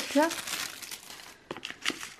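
Tissue paper crinkling and rustling as it is moved aside, fading out in the first second, then a few light taps as the cardboard palette box is handled.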